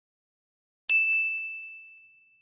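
A single bright ding from a subscribe-button notification sound effect, struck about a second in. One clear high tone rings out and fades over about a second and a half.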